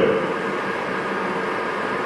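Steady, even background hiss with no other events: the room tone of a lecture hall.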